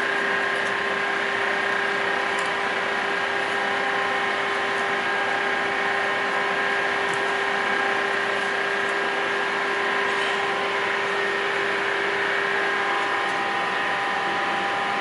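Steady hum of a ship's machinery, several constant tones over a noisy background, with a few faint ticks as wire is handled.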